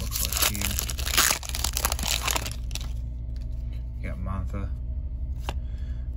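Foil wrapper of an SP Authentic hockey card pack being torn open and crinkled by hand, a dense crackling that stops about three seconds in.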